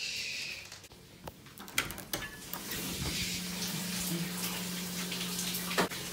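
Water running in a bathroom, rising in about two seconds in and then steady, with a steady low hum under it and a few clicks.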